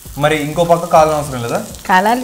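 A person talking over a dough cooking in a non-stick frying pan, stirred and scraped with a wooden spatula, with a light sizzle of frying.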